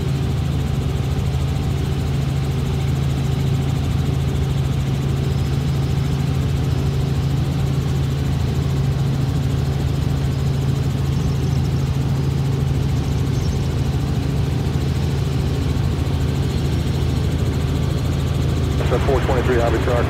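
Robinson R44 Raven II helicopter in cruise flight, heard from inside the cabin: its Lycoming IO-540 piston engine and rotor make a steady, unbroken drone with a low hum.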